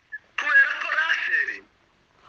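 A man speaking over an online call line, the voice thin and tinny with no low end; he speaks for about a second, with short pauses either side.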